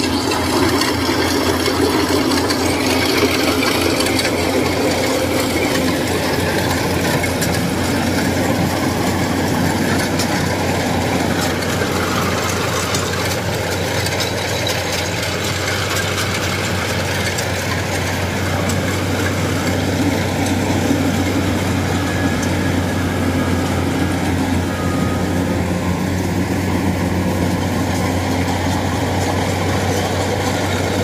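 Kubota DC-series rice combine harvester running steadily at close range, its diesel engine humming under the whir of the cutter and threshing gear as it harvests standing rice.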